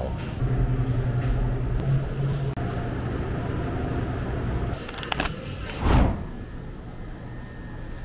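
Steady low mechanical hum of a shop's refrigerated drink coolers, with a few light clicks about five seconds in and a short, loud, low thump about a second later.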